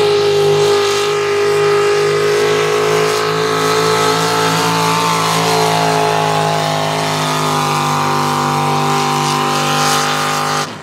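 Econo Rod pulling tractor's engine at high revs, pulling hard against a weight-transfer sled. The note is loud and steady, and its pitch sags slightly about two-thirds of the way through as the load builds.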